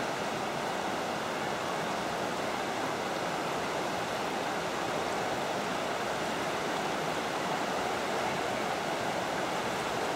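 Steady rushing of fast-flowing river rapids, an even wash of water noise with no distinct splashes.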